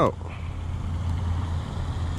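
A steady low rumble of outdoor background noise, even and unbroken, with no distinct events.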